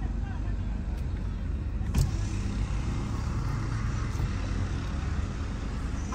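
Car engine running at a steady low rumble, heard from inside the cabin, with one sharp click about two seconds in.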